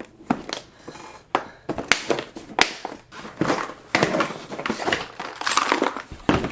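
Clear plastic tackle boxes being handled and swapped in a soft-sided tackle bag: a run of irregular plastic clacks and rattles with rustling, busiest in the second half.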